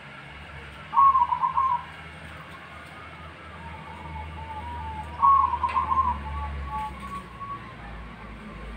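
Zebra dove (perkutut) cooing: two bursts of quick, stuttering coo notes, the first about a second in and the second about five seconds in, each followed by softer, lower trailing notes.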